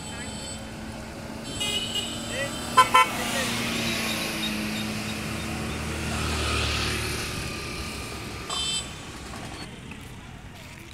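Two short vehicle-horn toots just before three seconds in. Then a scooter's small engine runs past close by, growing louder to a peak at about six and a half seconds and fading, over background voices.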